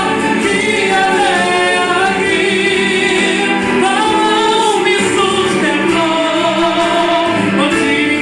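A woman singing a Portuguese gospel song into a microphone over instrumental accompaniment, holding long notes that bend and waver.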